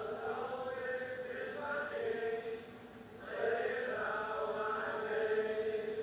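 Chant-like singing on a Volkswagen TV commercial's soundtrack, played through a small CRT television's speaker. Two long held phrases with a short break about halfway.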